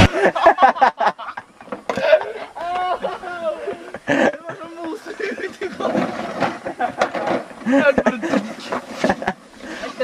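Several young men laughing and calling out, without clear words, mixed with short clicks and knocks.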